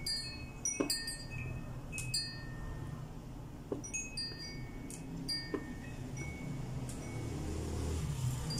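Soft chime tones ringing at irregular intervals, about two a second, high and bell-like, over a low steady hum.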